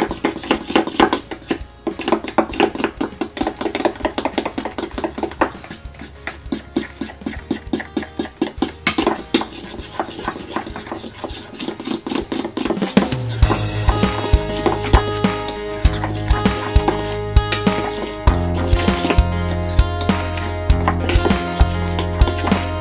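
A spoon stirring thick batter in a stainless steel bowl, clinking and scraping rapidly against the metal. About thirteen seconds in, background music with a steady bass line starts and plays over the stirring.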